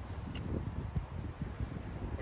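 Wind buffeting the microphone as a low rumble, with a couple of faint clicks, one about half a second in and one about a second in.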